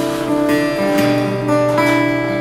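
Acoustic guitar strummed, its chords ringing on between a few strokes, with no voice.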